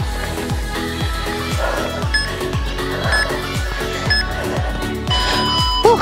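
Background dance music with a steady kick-drum beat. Over it an interval timer beeps three times, a second apart, then gives one longer tone near the end, marking the close of the work interval.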